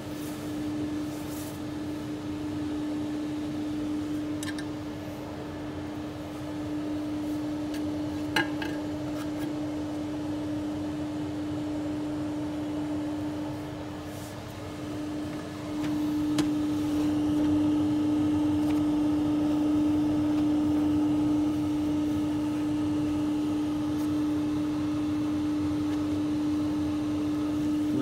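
Steady hum of fans or cooling equipment on a laser engraving machine, with one low drone that gets louder about halfway through. A few faint clicks and taps come as a glass sheet is handled.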